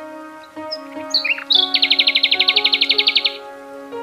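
Slow ambient meditation music of sustained, held tones, with recorded bird song laid over it. A few short chirps come about a second in, then a loud, fast trill of about fourteen notes a second lasts roughly a second and a half.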